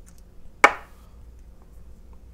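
A single sharp knock about two-thirds of a second in, a small metal mod part being handled or set down, with a brief ring after it, over a faint steady hum.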